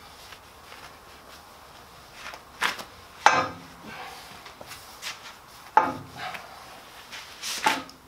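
A few scattered knocks and clunks of things being handled and set down on a jointer while it is wiped down, the strongest a little past a third of the way in and another about three-quarters through, over faint room tone.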